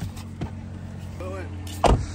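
A minivan's electric window motor runs with a steady low hum as the door window moves. A single sharp knock comes near the end.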